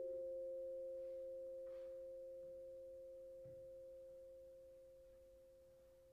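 Vibraphone chord left ringing and slowly dying away: two or three steady tones that fade gradually throughout, with no new note struck.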